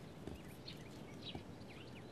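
Faint birds chirping: short, high chirps, a few a second, over a low background hush.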